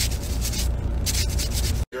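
Irregular scratchy rubbing close to a phone microphone over the steady low rumble of a car interior. It cuts off suddenly near the end.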